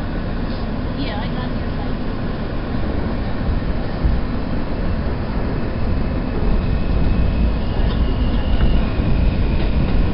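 Subway train pulling out of a station and gathering speed: a heavy low rumble grows louder as it accelerates, and a high steady whine joins in during the second half.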